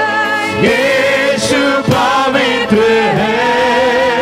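Female worship singers singing together into microphones, holding long notes with vibrato and breaking briefly between phrases.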